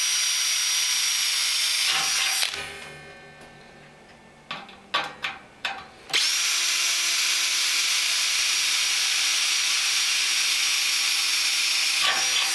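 Handheld power drill with an eighth-inch bit drilling pilot holes through a stainless steel kettle wall. It gives a steady high whine for about two seconds, spins down, and a few clicks follow. It then starts again and runs steadily for the last six seconds.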